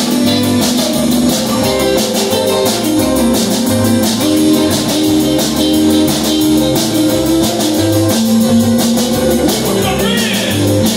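Live country band playing an instrumental passage: electric guitar, steel guitar and organ over drums keeping a steady beat.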